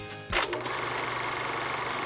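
The closing theme music cuts off, a short sudden hit comes about a third of a second in, and then a steady, rapid mechanical whirring sound effect runs under the station's logo ident.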